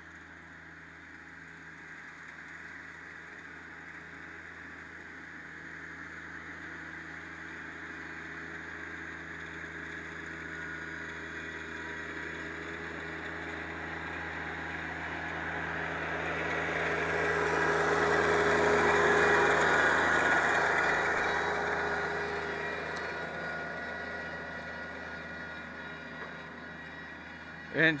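Rural King RK24 compact tractor's diesel engine running steadily as it drives in, passes very close about two-thirds of the way through, and pulls away again, growing louder and then fading. The pine straw rake drags leaves and brush along the ground behind it.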